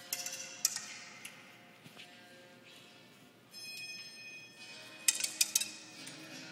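Pebbles dropping from a melting ice pyramid and striking a wooden rack of bamboo tubes: sharp clicks and clacks with brief ringing. There is a quick cluster just after the start, a few single clicks, and a denser run of strikes about five seconds in.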